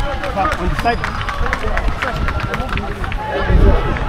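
Players' voices calling and chatting in the background of an outdoor field, not close to the microphone. Under them, low rumbling from wind and the wearer's movement on a body-worn camera microphone, swelling about three and a half seconds in.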